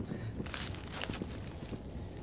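Soft footsteps of a person walking across a room: a few faint, irregular taps over quiet room tone.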